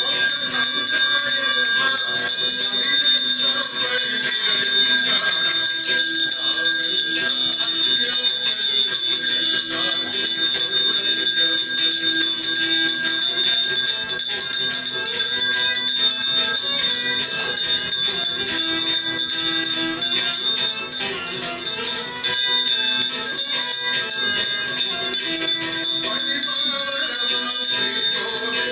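Devotional music: group singing over a steady metallic ringing and rattle of bells or small cymbals.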